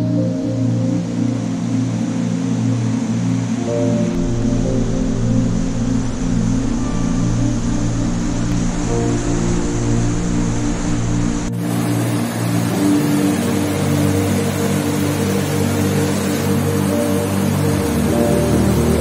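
Slow ambient background music with long, held low notes, over a steady rush of water that grows fuller and brighter about eleven and a half seconds in.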